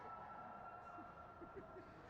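Near silence: faint room tone of an ice rink, with one steady thin high tone running underneath.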